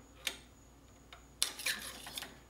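Light metallic clicks and scraping as the primer tube is pulled out of a Dillon XL650 reloading press's priming system: one sharp click about a quarter second in, then a quick cluster of clinks about a second and a half in.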